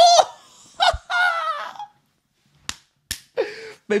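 A man shouting and laughing in excitement, with a dull thump about a second in. After a pause come two sharp taps.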